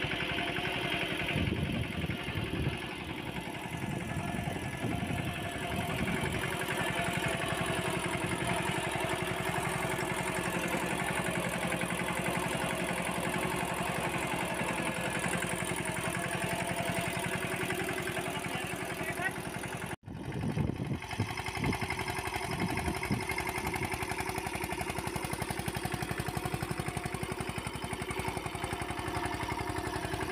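Mahindra Yuvraj 215 NXT mini tractor's single-cylinder diesel engine running steadily under way. The sound cuts out sharply for an instant about twenty seconds in, then carries on.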